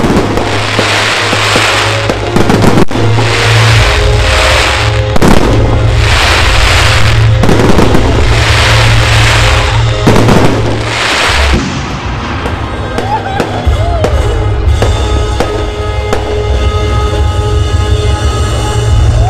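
Music track with a heavy bass, mixed with fireworks shells bursting, one every second or two for about the first twelve seconds; after that the music carries on with a gliding sung line.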